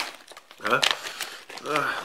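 Crinkling of a brown foil-laminate MRE food pouch as it is handled and pulled open.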